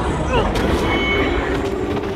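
Film sound effects of a Deviant monster: a growling snarl over a steady low rumble, with a short falling screech about a third of a second in.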